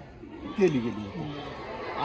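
Men talking in conversation: speech only, starting after a brief pause.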